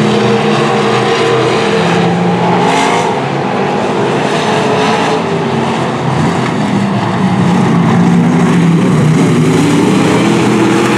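Dirt-track stock car V8 engines running hard at racing speed, loud and steady. The engine note dips slightly about three and six seconds in and swells again over the last few seconds as the cars come past.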